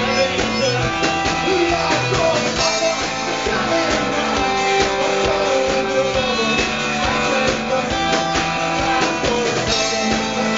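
Live indie rock band playing: electric guitars and bass guitar over a steady drum-kit beat.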